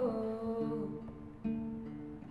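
A man's wordless sung note, held and fading out within the first second, over a guitar picked in slow single notes, with a fresh note struck about halfway through and another about one and a half seconds in.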